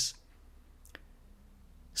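A pause in speech: quiet room tone with one short, faint click about a second in.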